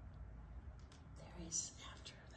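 Faint whispered voice about one and a half seconds in, over a low steady room hum.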